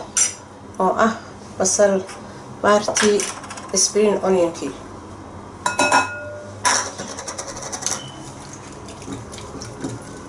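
About six seconds in, a plastic measuring cup knocks against a glass bowl with a brief ringing clink as chopped spring onions are tipped into the raw eggs. After that, beaten eggs are whisked in the glass bowl, making quick light clicks and taps against the glass.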